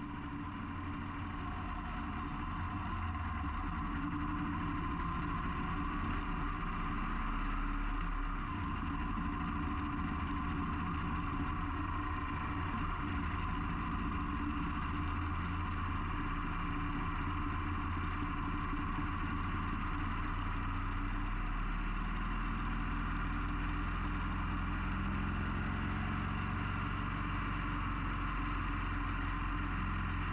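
Harley-Davidson Sportster 883's air-cooled V-twin engine running as the bike pulls away and rides along. It gets louder over the first few seconds, then runs steadily.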